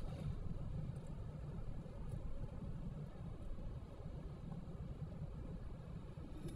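Steady low rumble of a car driving on the road, heard from inside the cabin.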